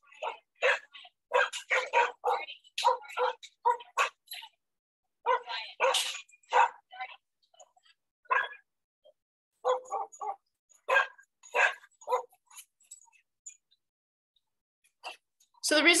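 A group of shelter dogs barking in short, separate bursts, alert-barking at children gathered outside their play-yard fence. The sound comes through choppy, with silent gaps between the barks.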